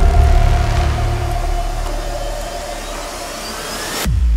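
Cinematic trailer sound design: a deep boom ringing out into a sustained low rumbling drone with a steady held tone above it, slowly fading, and a faint rising whine building over the last couple of seconds.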